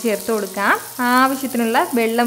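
A voice singing a melody with some long held notes, over a faint sizzle of frying as ground coconut masala paste is poured into hot oil.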